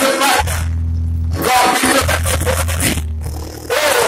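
Live church band music: cymbal crashes and swells on a drum kit over held low notes. The bright cymbal surges come three times: at the start, from about a second and a half in, and again near the end.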